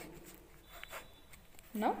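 Faint scratching of a pen on paper.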